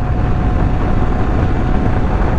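1984 Honda NS250R's two-stroke V-twin running at steady cruising revs, under heavy wind noise on the microphone.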